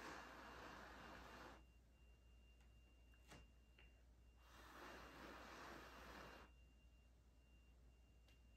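Two soft, long breaths blown by mouth across wet fluid acrylic paint on a canvas, each about two seconds, the first at the start and the second about four and a half seconds in, with a faint click between them.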